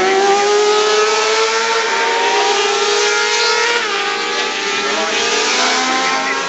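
Several 600cc supersport race motorcycles running at high revs together. Their engine notes climb steadily, with a brief dip in pitch about four seconds in.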